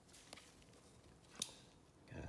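Near silence, with two faint clicks of trading cards being handled by gloved hands, one about a third of a second in and one about a second and a half in.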